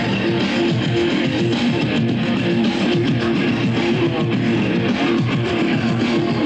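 A live band playing loud electronic rock: a repeating electric guitar riff over a driving beat.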